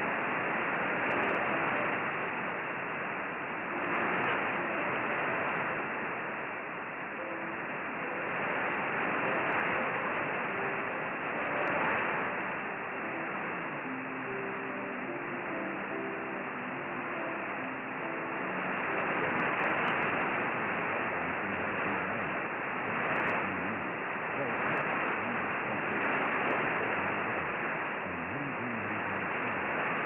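Weak shortwave broadcast from Global 24 Radio on 9395 kHz, received in synchronous AM on a Perseus SDR: steady static hiss, with faint programme audio barely showing through and a few short notes about halfway through.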